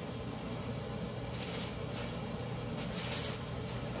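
Quiet room tone: a steady low hum with a few faint, soft rustling noises.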